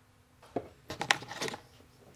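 Hands handling the cables and connector wiring at a battery's BMS: a few small, sharp clicks with some rustling between about half a second and a second and a half in.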